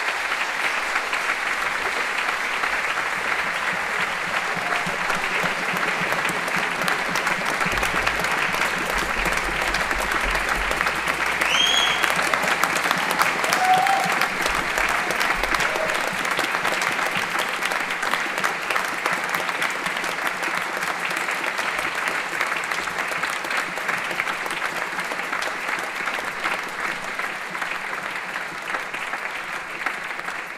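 Sustained audience applause from a concert hall crowd, steady throughout and briefly louder about twelve to fourteen seconds in.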